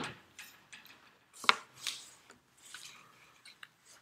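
A whiteboard eraser scrubs briefly across the board at the start. Scattered handling noises follow: a sharp click about a second and a half in, then a few softer rubs and ticks.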